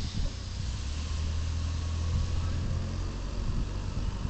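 A steady low engine hum, like a motor idling, with a faint hiss above it.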